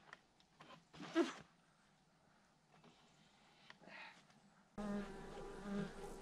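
A flying insect buzzing close to the microphone. It passes with a brief falling buzz about a second in, then hovers with a steady buzz from about five seconds in.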